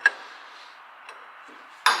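A large steel open-ended spanner knocking against a bolt on a tractor's metal casing: a sharp clink just at the start and a louder one near the end.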